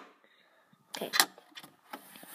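Near silence for about the first second, then a woman says "okay", followed by a faint click near the end.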